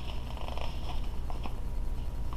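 A steady low hum, with a few faint paper clicks and rustles as a picture book's page is handled and starts to turn near the end.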